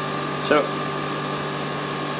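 Homemade generator rig running at speed: its electric drive motor spins the rotor past the pickup coil, giving a steady whir with a constant hum and a thin higher tone.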